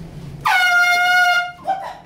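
Air horn blasting one loud, steady note for about a second, with a short upward scoop at its start, then cutting off.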